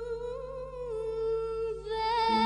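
A female singer holds one long sung note with vibrato over a faint low accompaniment. The note dips slightly about halfway through, then she moves up to a higher note near the end.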